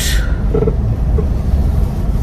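Steady low rumble of a car heard from inside its cabin, the engine and road noise of the car she sits in.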